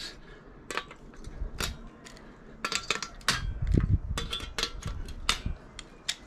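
Metal tools tapping and prying at a PlayStation 2's steel shield as brass connector prongs are knocked out, giving a scattering of sharp metallic clicks and clinks, sparse at first and busier from about halfway, with a few duller knocks in the middle.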